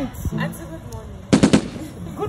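A short, rapid rattle of sharp clicks or knocks, lasting about a third of a second, about one and a half seconds in.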